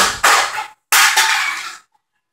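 An empty aluminium drinks can thrown hard against a wall: two loud crashing clatters about a second apart, the second starting sharply.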